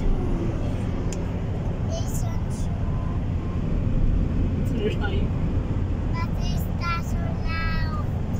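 Steady road and engine rumble inside a moving car's cabin, with a few short high-pitched voice sounds in the second half.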